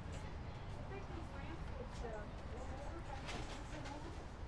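Faint, distant conversation of people in the background over a steady low rumble on the microphone, with a few soft clicks.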